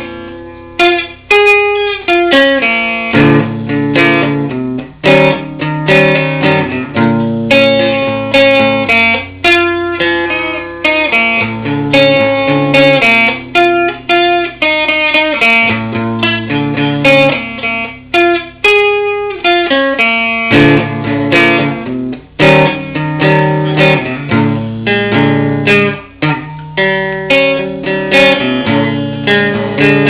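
Hollow-body electric archtop guitar played solo with a clean tone: plucked chords and single-note melody lines over bass notes, each note ringing out and fading before the next.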